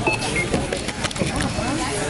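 Checkout beeps from a store scanner or card terminal: two short high beeps near the start, the second slightly lower, over steady background chatter.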